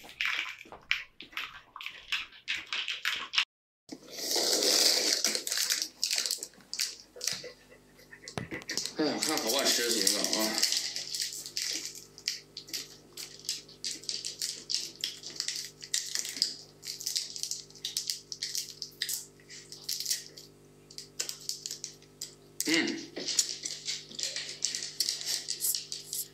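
Small plastic sweet wrappers crinkling and tearing as individually wrapped candied jujubes are unwrapped and handled, in many quick crackles. A faint steady hum runs underneath in the second half.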